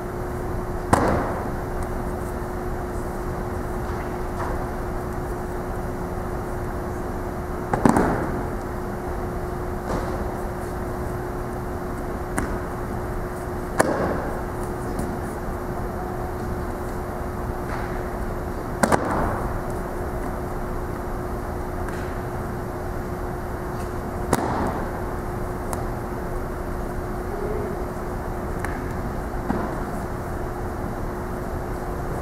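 Repeated thuds of a person taking rolls and breakfalls on a wrestling mat as they are thrown, about six in all, each ringing briefly in a large hall. Under them a steady background hum with a constant tone.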